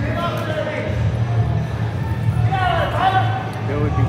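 Spectators and coaches calling out in a school gymnasium over a steady low hum, with one louder, drawn-out shout about two and a half seconds in.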